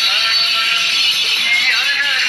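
Devotional kirtan singing: a voice wavering in pitch over loud, steady music with a constant bright shimmer high up.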